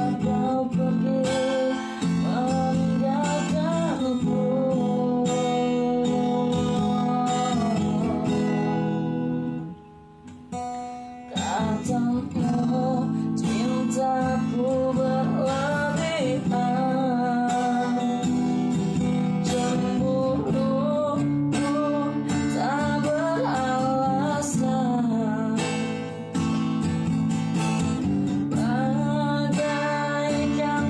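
A man singing while strumming an acoustic guitar, with a brief break of about two seconds near the middle where the playing drops away before picking up again.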